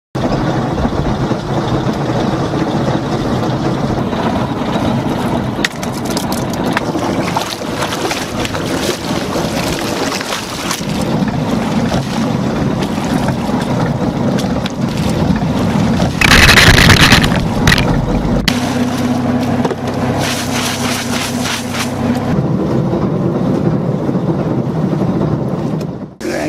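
A fishing boat's engine running steadily, with wind on the microphone and water noise around it. About two-thirds of the way through, a loud rush of noise lasts about a second.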